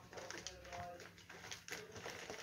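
Faint, indistinct voices with a few soft clicks or rustles.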